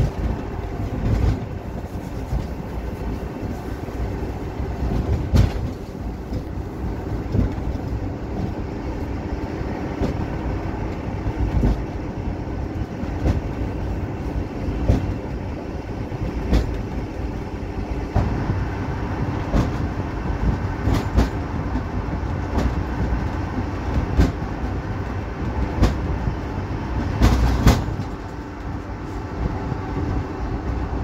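Inside the patient compartment of a moving ambulance: a steady low rumble of engine and road noise, with the body rattling and clunking over bumps, the loudest clunks coming a few times and the heaviest near the end.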